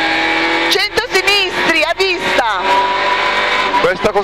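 Rally car's 1.6-litre four-cylinder engine running hard inside the cabin under full load, held at a steady high pitch for about the first second and again over the last second and a half.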